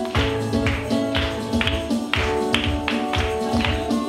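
Live worship band music, an instrumental passage with acoustic guitar over held chords and a steady beat of about two strokes a second.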